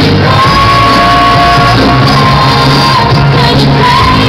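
Live pop-rock song played loud through a stage PA, a woman's voice holding one long note over the band for about two and a half seconds.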